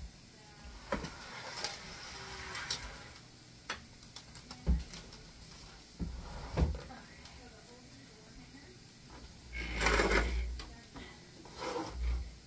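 Household objects being handled and shifted on a wooden floor under a bunk bed during cleaning: scattered knocks and thumps, the loudest a little under five seconds in. About ten seconds in comes a longer stretch of scraping and rustling.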